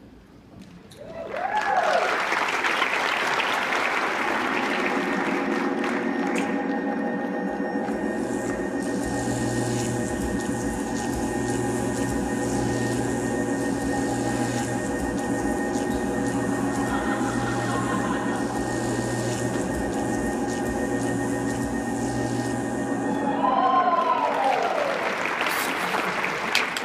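Science-fiction time-machine sound effect over a theatre sound system: a rising whoosh, then a long steady electronic drone of many held tones with a hum and a hiss over it. Sweeping pitch glides and a louder swell come a couple of seconds before the end, as the machine arrives.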